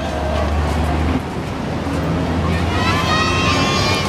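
Road traffic running on the street below, a low steady rumble strongest in the first second. Near the end, high-pitched voices calling out over it.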